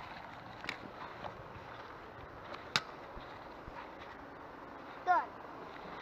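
Steady outdoor background noise with a few light clicks and one sharp click nearly three seconds in, then a brief vocal sound near the end.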